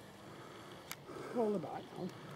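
Faint outdoor background with one sharp click about a second in, followed by a short, quiet human vocal sound falling in pitch, such as a murmured word.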